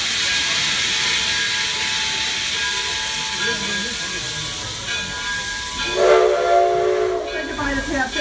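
Steam locomotive standing with a steady hiss of escaping steam. About six seconds in, its steam whistle gives one blast lasting nearly two seconds.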